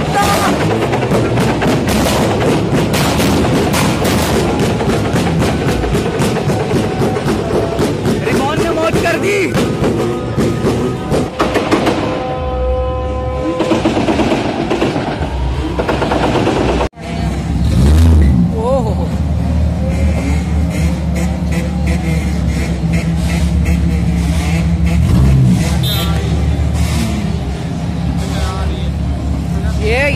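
Modified car's engine revved hard, its exhaust popping and crackling in a rapid run of very loud bangs. Near the middle the bangs stop, and after a cut a steady low engine rumble carries on.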